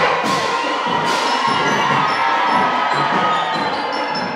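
Crowd cheering and children shouting over a youth marching percussion band playing drums with melodic percussion, with two ringing crashes in the first second or so.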